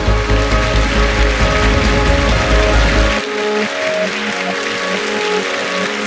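Intro music with sustained chords and a heavy deep bass; the bass drops out about three seconds in, leaving lighter held chords.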